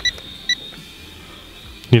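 Two short electronic beeps about half a second apart from the Iron Man Sky Hero toy drone's 2.4 GHz remote as its flip button is pressed, arming the flip. Under them is the faint, steady high whine of the quadcopter's motors in flight.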